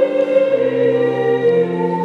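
Soprano voice singing a held note with vibrato over sustained pipe-organ chords. The voice fades out about a second and a half in, leaving the organ sounding alone.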